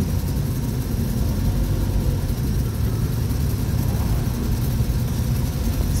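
Steady low rumble of a vehicle's engine, heard from inside the cabin.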